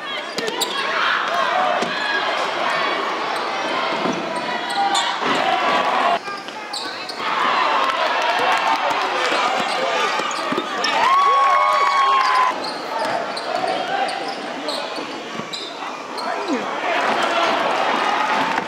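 Game sound in a basketball gym: many voices of a crowd talking and shouting, with a basketball bouncing on the court and a short squeak a little past the middle.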